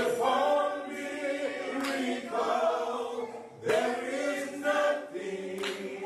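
A group of men singing gospel in harmony into microphones, several voices held together in phrases that start afresh about every two seconds.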